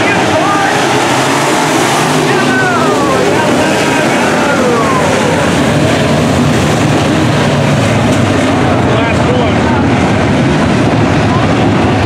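A pack of dirt modified race cars' V8 engines running hard on the dirt oval, loud and continuous, with engine pitch falling as cars sweep past the fence about two to four seconds in.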